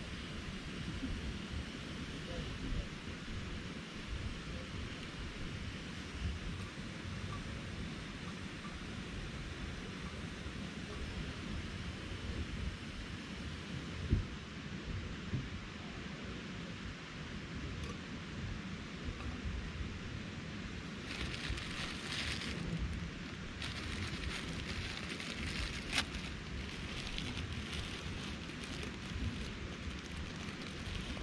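Steady low rumble and hiss of wind on the microphone. From about two-thirds of the way in, a plastic food packet crinkles as it is handled and torn, with a couple of sharp clicks.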